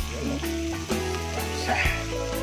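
Background music with a steady bass line over butter sizzling with freshly added minced garlic in a stainless steel wok, with a couple of knocks from the metal spatula.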